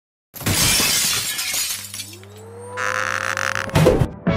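Cartoon sound effects: a sudden loud crash with shattering glass, then a rising whistle over a steady low hum, a short burst of hiss and a final hit.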